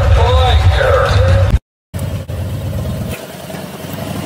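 A voice over a heavy low backing stops abruptly about a second and a half in. After a brief silence, a motorcycle engine runs at low revs.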